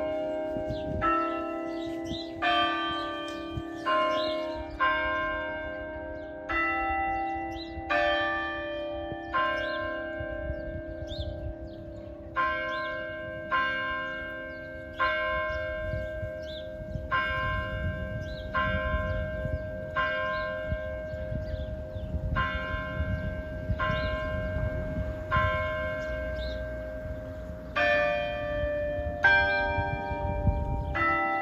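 Newly installed church tower bells, set off by a push-button, striking a tune of different pitches about once a second, each stroke ringing on over a lingering hum. This is the blessing sequence meant to close each service.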